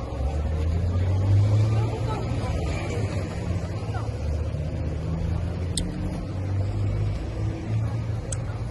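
City street traffic: a steady low rumble of passing car and motorbike engines.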